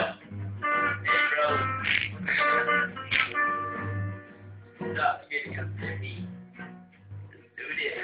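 Acoustic guitars being played loosely, with boys' voices talking over them, recorded on a mobile phone's low-quality microphone.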